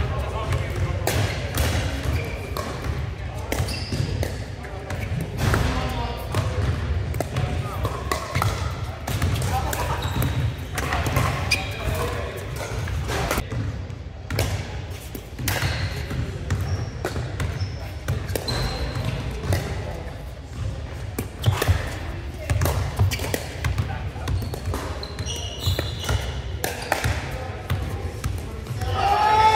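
Pickleball play in a large indoor hall: irregular sharp pops of paddles striking the plastic ball, over players' background chatter and a steady low rumble.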